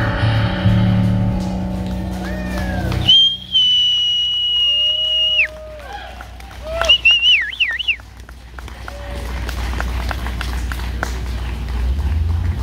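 A live band's song ends abruptly about three seconds in. The audience answers with whistles: one long, steady whistle that drops at its end, then a warbling whistle about seven seconds in, followed by cheering and scattered clapping.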